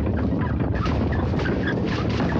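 Birds calling in many short, overlapping calls over a steady low rumble.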